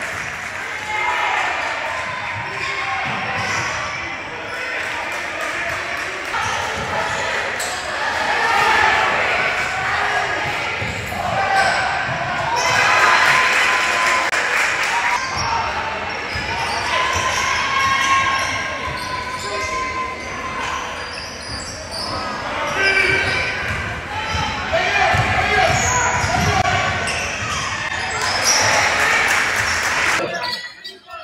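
Basketball game in a gymnasium: the ball bouncing on the hardwood court amid a continuous mix of players' and spectators' voices and calls in the large hall.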